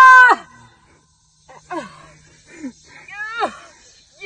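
A child's voice: a loud held shriek that breaks off just after the start, then three or four short cries that slide down in pitch, the last and loudest a little past three seconds in.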